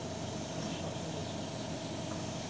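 Steady machine hum with a constant mid-pitched tone over an even hiss, unchanging throughout.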